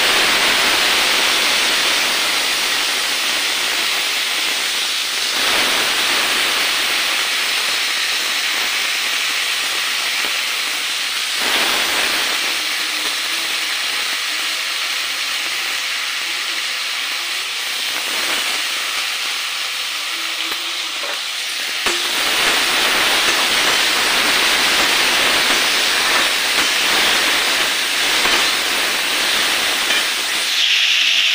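A loud, steady hiss with no clear pitch, changing abruptly in tone about five, eleven and twenty-two seconds in.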